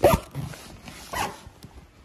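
A short 'mm-hmm' and laugh at the start, then a brief rasp about a second in: the metal zipper on a soft plyo box's vinyl cover being run.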